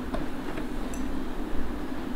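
A few light plastic clicks and taps as a food-processor bowl is unlocked and lifted off its motor base, one with a faint glassy clink, over a steady low background hum.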